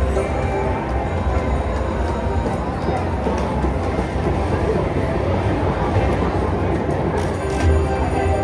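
Thunder Drums Mayan Mask slot machine playing its free-games music and sound effects as a scatter pay is awarded, with low bass throughout and a few sharp ticks near the end.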